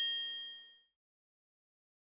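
A single bright bell-like ding sound effect, several high tones ringing together and dying away within the first second.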